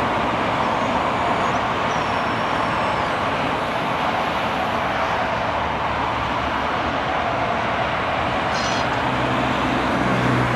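Diesel engine of a Lännen 8600C backhoe loader running steadily while the backhoe arm digs and lifts a bucket of soil.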